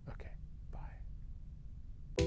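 A man's faint, breathy vocal sounds, twice in the first second, over low room noise.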